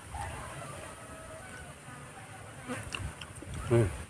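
Faint buzzing of flying insects, with thin wavering tones that come and go.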